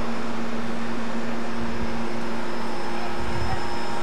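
Steady noise with a faint hum, broken by a couple of dull low thumps about one and a half and three and a half seconds in.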